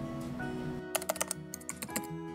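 Background music with a rapid run of computer keyboard typing clicks, about ten in a second, starting about a second in.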